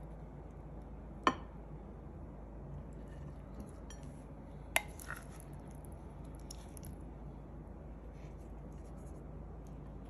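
A serving spoon scooping salad from a glass bowl onto a plate, with two sharp clinks, one about a second in and one near the middle, and a few faint taps. Under it runs the steady low hum of a kitchen range hood fan on its low setting.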